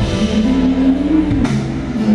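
Live band music with a bass guitar line prominent over a drum kit, a low note sliding up and back down in the middle.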